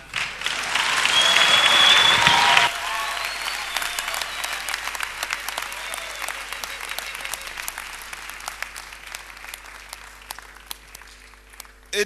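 A congregation clapping, loudest and densest over the first few seconds with a few shouted voices over it, then thinning out and fading away.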